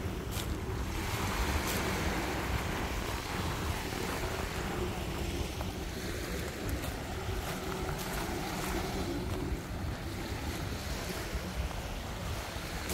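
Small waves washing onto a coarse sand-and-shell beach, with steady wind buffeting the microphone as a low rumble.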